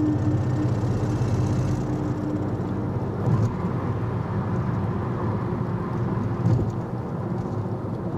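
Car cabin noise while driving: a steady low road-and-engine rumble, with a faint steady hum that fades out a couple of seconds in.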